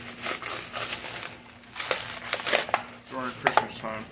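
Packaging crinkling and rustling in irregular bursts as a package is opened by hand, with a brief murmur from a man about three seconds in.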